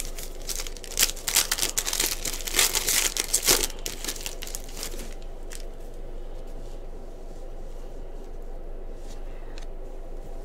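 Foil trading-card pack being torn open: dense crinkling and tearing of the wrapper for about three seconds. This is followed by softer handling of the cards, with a few faint clicks.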